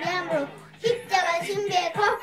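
A young girl singing a rap-style praise song over a backing track with a steady beat; her voice breaks off briefly about half a second in and comes back just before the one-second mark.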